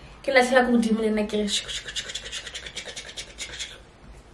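A woman's voice briefly, then a stainless steel cocktail shaker shaken hard for about two seconds, its metal parts rattling fast.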